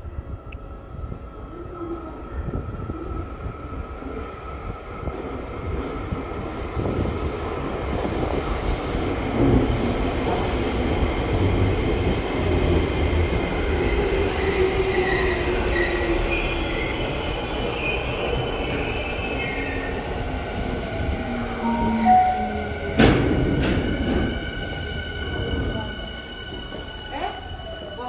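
Tokyo Metro 7000 series train with Hitachi IGBT-VVVF drive pulling into the platform and braking to a stop: wheel and motor noise swells, the motor whine falls in pitch as it slows, with high brake and wheel squeal. Near the end a short loud burst of noise comes as it stops.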